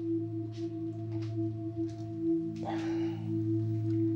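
Background film-score music: a sustained drone of steady held low notes, with a brief soft rustle about two and a half seconds in.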